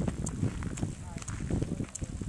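Footsteps thudding unevenly across rough, grassy ground, with bumps from a handheld camera and voices faintly behind.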